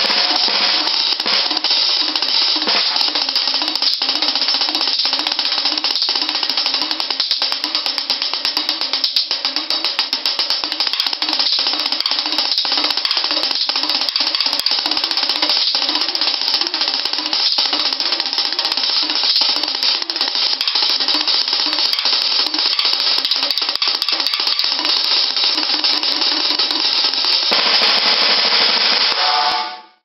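Snare drum played with sticks in a fast, unbroken double-stroke roll, steady in level with occasional louder accents, fading out at the very end.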